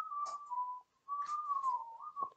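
A person whistling a few notes, the pitch wavering and stepping down, with a short break about a second in.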